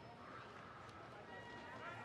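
Faint voices without clear words, over a low background hum.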